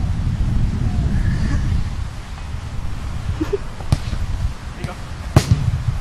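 Baseball bats knocking a ball about on grass: two sharp knocks, about four and five and a half seconds in, the second the louder. Under them runs a low rumble of wind on the microphone.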